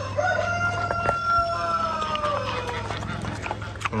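A rooster crowing once: one long call of more than two seconds that sinks slowly in pitch as it fades.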